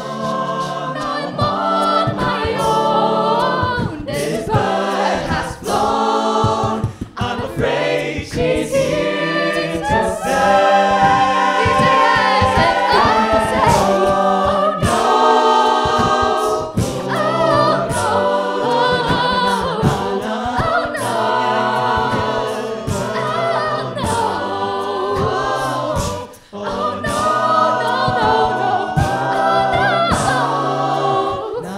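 Mixed-voice a cappella group singing a pop cover: layered harmony voices under a lead, driven by beatboxed vocal percussion hits.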